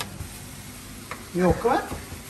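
Chef's knife chopping red onion on a wooden cutting board: a knife strike at the start and a fainter one about a second in, over a steady hiss.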